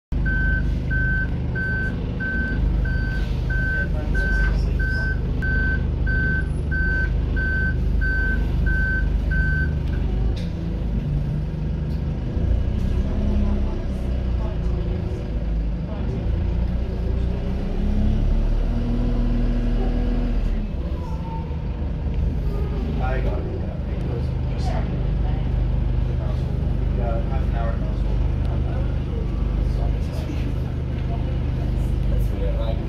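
Dennis Dart SLF single-deck bus heard from inside the saloon. A reversing alarm beeps steadily, about one and a half times a second, for the first ten seconds. Then the diesel engine and transmission pull away, with a whine that rises in pitch.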